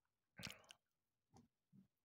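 Close-miked chewing of chocolate with whole hazelnuts and almonds: one louder chew about half a second in, then two softer ones.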